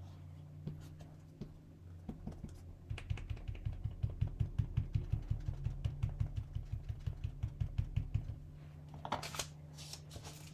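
Cotton ball dabbing ink through a paper stencil onto vinyl card on the desk: a quick, even run of soft taps, about seven a second, starting about three seconds in and lasting some five seconds, over a low steady hum. A short rustle of paper follows near the end.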